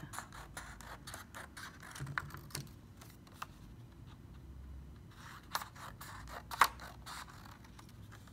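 Scissors cutting through paper: a run of short snips along the edge of a paper template, the loudest snip about six and a half seconds in.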